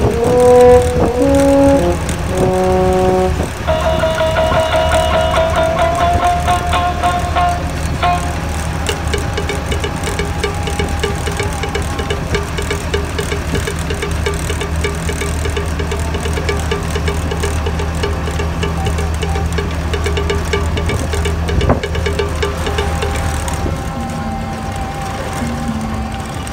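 Steady low hum of a moving motor vehicle, heard from inside, with music over it: a few short separate notes, then a long held note, then a fast repeating pattern. The hum eases near the end.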